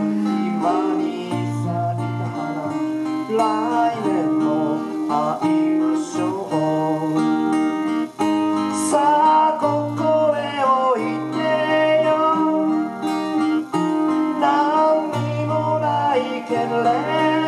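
A live acoustic duo: two acoustic guitars played together, with a man singing over them.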